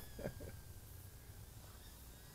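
Near silence between words: faint room tone with a low hum and hiss, and a brief voice sound just after the start.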